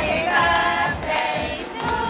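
A group of people singing "Happy Birthday" together, several voices holding each sung note.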